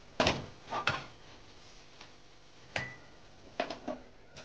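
Stainless steel pan and scraping spoon knocking against a steel plate as a thick chocolate-peanut mixture is tipped and scraped out: a few sharp clanks, the loudest just after the start, one near the end of the third second leaving a short metallic ring.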